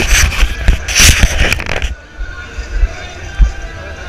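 Handling noise on a body-worn camera's microphone as the wearer turns: loud rustling and scraping for about the first two seconds, then quieter street noise with a low rumble.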